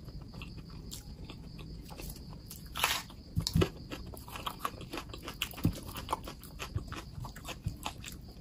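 Close-miked chewing of crispy fried samosa, with crunches and wet mouth sounds, sped up to double speed. A louder cluster of crunches comes about three seconds in.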